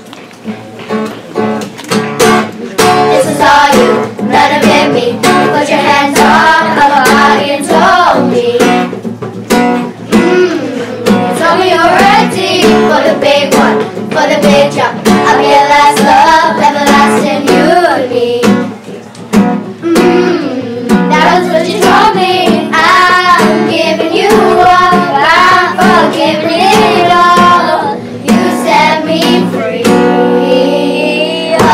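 Girls' children's choir singing a song, accompanied by a strummed acoustic guitar; the music swells to full volume about two seconds in.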